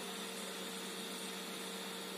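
Steady hum and hiss of small electronics cooling fans running, with two faint steady tones under an even airy noise.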